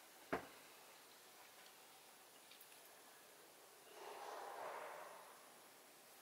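Near silence in a small room, broken by a single sharp click about a third of a second in and a soft rustling swell about four seconds in that lasts just over a second.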